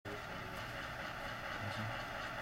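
Steady background hiss with a faint low hum: room noise, with no distinct events.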